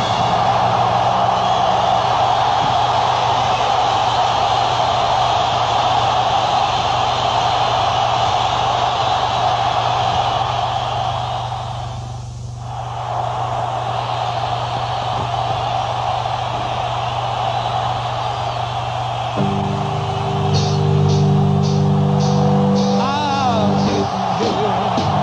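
Live hard rock: a loud, sustained noisy wash of band sound over a steady low bass note, thinning briefly about halfway through. About twenty seconds in, held chords come in, with regular cymbal strokes and a wavering, bending electric guitar line at the end.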